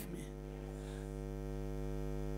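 Steady electrical mains hum, a low buzz with a ladder of evenly spaced overtones, carried through the microphone and PA system.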